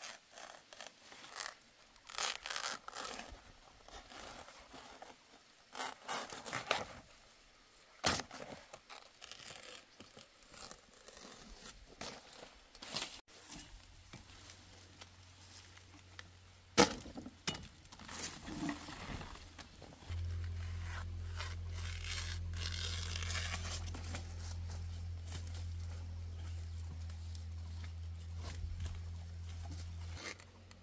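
Large green leaves and plant stalks being cut with a machete and torn by hand, with rustling foliage and several sharp snaps. About two-thirds of the way through a steady low hum joins.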